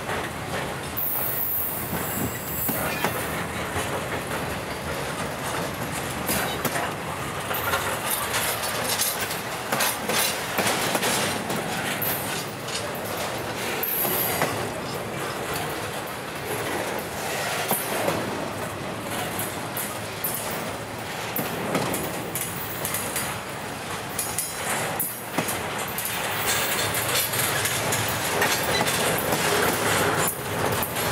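Intermodal container cars of a freight train rolling steadily past close by: wheels running on the rails with a constant clicking over the rail joints and brief high-pitched wheel squeals now and then.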